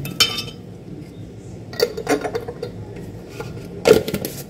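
A spoon knocking against the glass jar of a blender, tapping off the sugar it was used to add. There are a few clinks: one near the start, a couple about halfway, and the loudest near the end.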